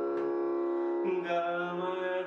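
Harmonium holding a steady drone in Raag Bhairav, with a soft plucked note near the start. About a second in, a man's voice enters, singing the opening of the bandish's sthayi in Hindustani classical style over the harmonium.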